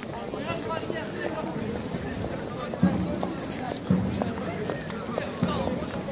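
Busy pedestrian street ambience: many people talking and walking, footsteps on stone paving, with a few louder knocks around the middle.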